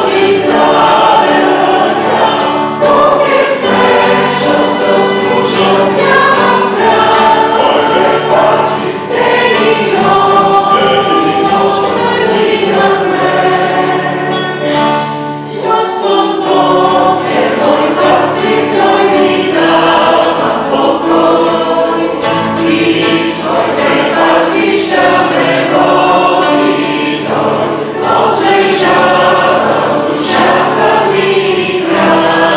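A small mixed choir of men and women singing a hymn together, accompanied by strummed acoustic guitar and keyboard.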